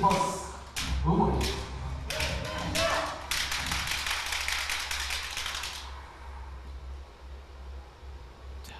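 Audience applause greeting a successful bank shot: scattered claps at first, then a dense round of clapping for a couple of seconds that dies away about six seconds in.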